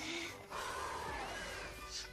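Faint cartoon soundtrack playing quietly, with a few slow glides in pitch that rise and fall in arches.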